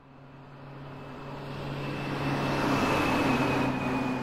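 A farm tractor's engine running with a steady low drone, fading in from silence and growing steadily louder.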